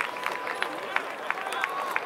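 Stadium crowd clapping in scattered, irregular hand claps over a background of crowd voices.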